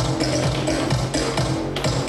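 Dance music with a steady beat.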